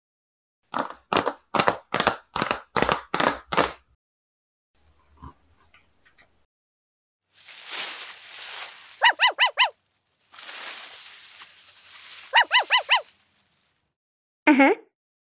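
Cartoon-style sound effects: a run of about eight quick, evenly spaced hits, then two stretches of soft hiss, each ending in four quick high chirps.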